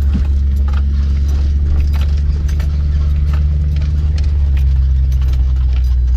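Mercedes ML SUV driving slowly over a rough dirt track, heard from inside the cabin: a steady low drone with many small clicks and rattles over it. The drone's pitch drops slightly about four seconds in.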